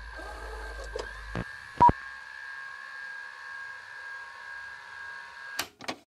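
Electronic sound effects of a production-company logo sting. Several steady electronic tones are held under a low rumble that stops after about a second and a half. There are a few clicks, a short sharp beep just before two seconds in (the loudest sound), and two quick blips near the end.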